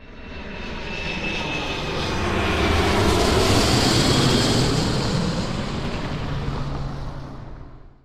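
A rushing, engine-like noise like an aircraft passing: it starts suddenly, builds to a peak about four seconds in, then fades and cuts off at the end.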